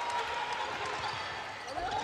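Volleyball rally heard over steady arena crowd noise, with thuds of the ball being hit.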